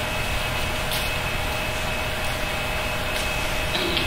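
Steady meeting-room background noise: a low rumble and hiss with a constant hum, as from ventilation, with a faint brief hiss about a second in.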